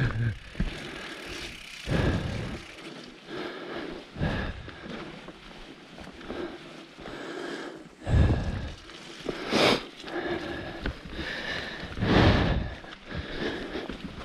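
Mountain bike rolling down a dirt forest trail: steady tyre and bike rattle, with about six louder knocks and rushes as it runs over bumps.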